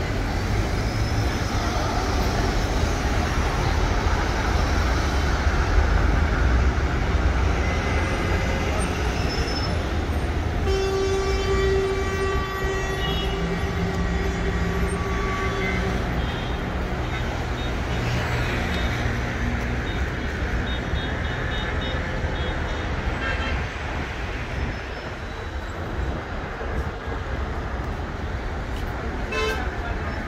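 Dense city road traffic: a steady rumble of engines and tyres. About ten seconds in comes a sustained pitched, horn-like tone that lasts several seconds.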